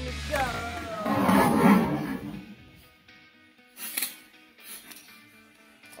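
Hot Wheels monster trucks rolling down a plastic track on a wooden ramp: a rattling rumble for about a second, then fading out. A single sharp click comes near the middle.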